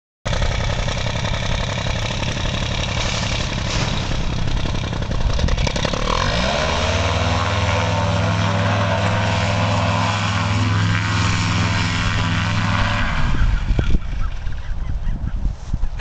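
A paramotor's engine and propeller running hard. About six seconds in it drops in pitch to a steady drone, then winds down and stops near thirteen seconds, leaving a rushing noise.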